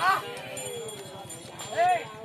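Handlers' short, sharp calls urging a yoked pair of Ongole bulls dragging a stone block: one call right at the start and another near the end, with the bulls' hoof steps on the dirt between them.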